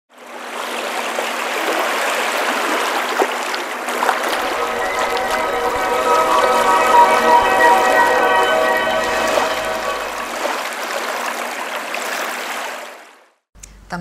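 Sea waves washing onto a beach, with a held musical chord swelling in over them about four seconds in and fading out again around ten seconds. The whole sound fades in at the start and fades out shortly before the end.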